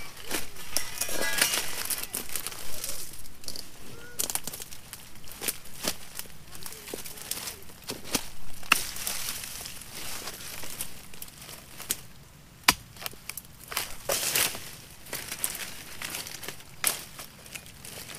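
Irregular sharp knocks of a dodos chisel blade striking an oil palm's bunch stalk and fronds, with rustling as the fruit bunch and dry fronds are handled on the leaf litter. The loudest knock comes about two-thirds of the way in.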